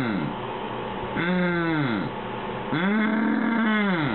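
A person moaning 'mm' in pain while a cyst behind the ear is squeezed. There are three drawn-out moans, each falling in pitch at the end, and the last is the longest.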